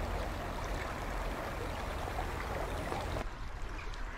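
River water running in a steady rushing wash, dipping a little in level about three seconds in.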